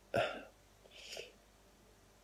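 A man's brief, sharp catch in the throat just after the start, then a soft breath about a second later.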